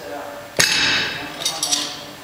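Metal clanks from a Rolling Thunder grip handle and the weight plates on its loading pin: one sharp clank with a short ring about half a second in, then a quick run of clinks near the end.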